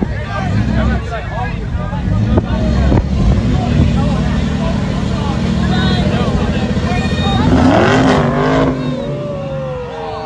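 Engines of a Dodge Ram pickup and a stuck Dodge Charger running under load during a tow out of soft sand. One engine revs up, rising in pitch, to the loudest point about three-quarters of the way through, then eases off. Crowd voices chatter throughout.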